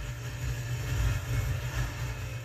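A steady, muffled low rumble from an episode's sound effects played quietly in the background, with almost nothing heard above the low end.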